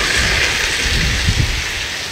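A drift trike's small hard rear wheels sliding sideways across asphalt as it passes close by. It makes a rough, steady scraping hiss that fades as the trike moves away, with low rumbling underneath.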